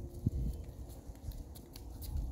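Footsteps and camera-handling thumps while walking across a yard: irregular low thuds, the sharpest about a quarter second in.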